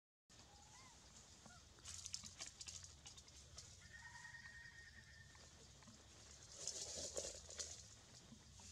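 Faint, short high squeaks from a newborn macaque, with scratchy rustling bursts about two seconds in and again, louder, near the end.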